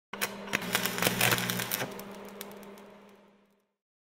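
Logo sound effect: rapid, irregular crackling clicks over a low electric hum, fading away to silence about three and a half seconds in.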